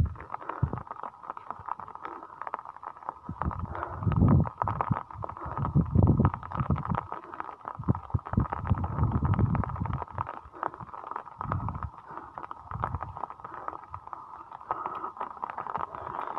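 Wind buffeting a phone microphone in gusts, a low rumble that swells and fades several times, over a steady faint high hum and scattered small clicks.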